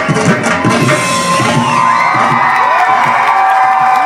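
Dhol drums played in rapid strokes that stop about a second and a half in, followed by a crowd cheering, shouting and whistling.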